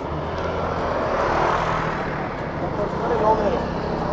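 Yuki Retro 100 scooter engine running as it rides slowly through traffic, with road and wind noise that swells about a second and a half in and then eases.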